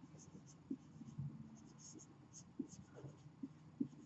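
Whiteboard marker writing on a whiteboard: faint, short strokes coming irregularly as letters are formed.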